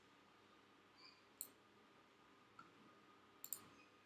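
Computer mouse clicking over faint room hiss: a single click about a second and a half in, a faint one later, and a quick double click near the end.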